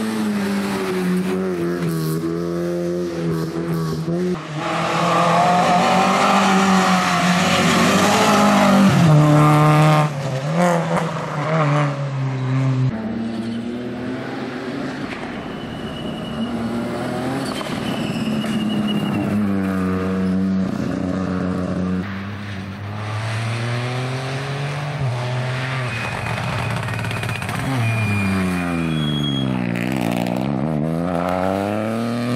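Rally cars passing one after another on a gravel stage, among them a Fiat Punto and a Ford Fiesta, engines revving hard and rising and falling in pitch through the gear changes, loudest as a car passes close a few seconds in. Tyres throw gravel through the bend. Near the end an engine drops sharply in pitch and then climbs again, braking and downshifting for a corner before accelerating away.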